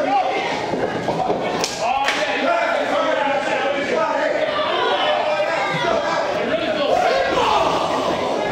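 Crowd voices in a hall shouting and calling out at a live wrestling match, with a couple of sharp smacks of strikes about two seconds in.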